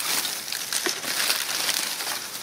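A plastic garbage bag full of shredded paper and plastic strapping crinkles and rustles steadily as a hand rummages through it.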